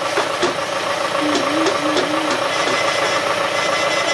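Tractor engine of a tractor-pulled passenger train ride idling steadily, a continuous engine hum.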